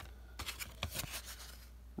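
Cardboard beer coasters handled by hand, sliding over one another as they are flipped and shuffled, with a few light clicks of card on card.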